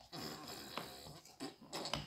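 Metal spoons stirring flour and oil in a stainless steel mixing bowl: soft scraping with a few light clinks against the bowl.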